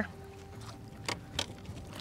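Faint steady hum of a boat motor idling, with two short light knocks a little over a second in.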